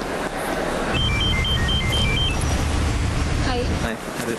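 A mobile phone ringtone: a quick electronic melody of about a dozen short beeps stepping up and down in pitch, lasting just over a second, over a steady low rumble.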